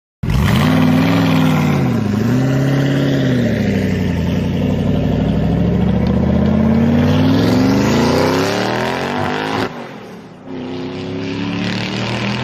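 Car engine revving up and down, then rising steadily in pitch as it accelerates. Shortly before the end it cuts off sharply and a lower, steadier engine note comes back.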